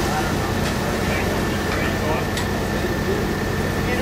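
Nitro-burning supercharged AA/FC funny car engine idling steadily during a pit warm-up, with shouted voices over it.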